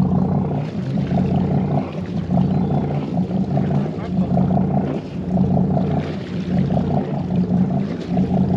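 A boat's inboard engine running at low revs with a steady low hum that swells regularly about once a second.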